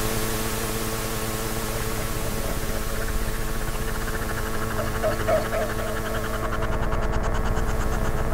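Live synthesized electronic music: a dense drone of several steady held tones over a noisy hiss, with a fast pulsing, rippling texture. A higher rippling layer comes in partway through, and the whole builds slightly louder near the end, following a programmed crescendo.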